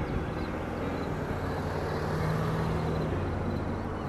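Outdoor background noise: a steady rushing haze with a low hum underneath, swelling slightly through the middle and easing off toward the end.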